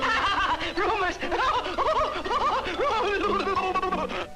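A cartoon character's voice laughing madly in a continuous run of quick, bouncing giggles and chortles.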